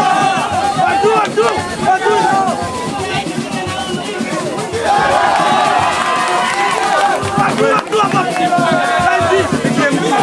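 Spectators at a boxing match shouting and calling out, many voices over one another, growing louder about five seconds in.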